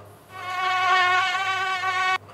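Mosquito whine: a steady buzzing tone made by its beating wings, starting about a third of a second in.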